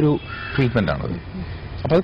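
A bird calling briefly about half a second in, among pauses in a man's speech.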